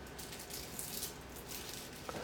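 Quiet room tone in a pause between sentences, with a few faint, brief rustles from a man's suit as he turns and gestures.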